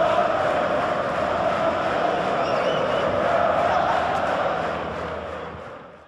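A large crowd cheering and chanting, a steady roar that fades out over the last couple of seconds.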